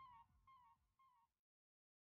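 A faint short pitched sound effect repeating in a fading echo about twice a second, dying out about a second and a half in, then dead silence.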